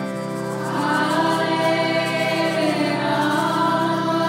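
A group chanting a kirtan chant together, over an instrumental accompaniment with a steady held drone; the voices swell in about a second in.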